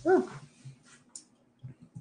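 A person's short vocal exclamation, "huh", rising then falling in pitch, then near quiet.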